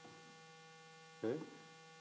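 Faint steady electrical mains hum, a stack of steady tones, through a pause in speech; a man says "okay" about a second in.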